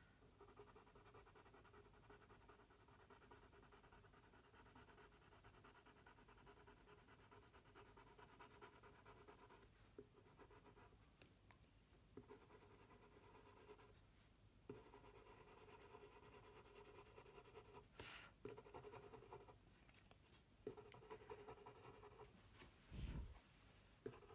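White coloured pencil scratching faintly over toothy mixed media paper in very small circles, broken by a few brief pauses as the pencil lifts.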